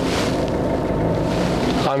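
A car on the move: a steady rush of engine and road noise with a low rumble, cutting off just before the end.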